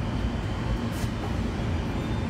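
A steady low rumble of machinery running, with one short click about a second in.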